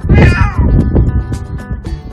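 Elderly calico cat giving one loud meow right at the start, falling in pitch over about half a second, over background music.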